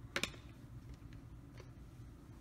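A couple of short, light plastic clicks just after the start as the LCD writing tablet and its stylus holder are handled, then quiet room tone.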